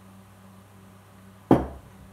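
A small brown glass beer bottle set down on a wooden table: one sharp knock about one and a half seconds in, over a faint steady hum.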